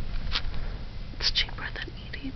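A person whispering, with a few short hissy sounds about a third of a second in and again in the second half.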